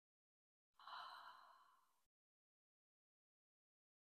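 A woman's single audible exhale, a sigh of about a second and a half, starting just under a second in and fading away.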